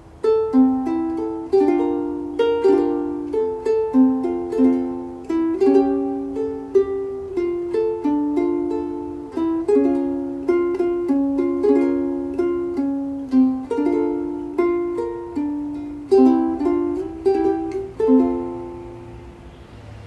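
Kiwaya KPS-1K/HG soprano ukulele played solo, plucking a melody over chords, each note starting crisply and ringing away. Near the end a final note rings out and fades.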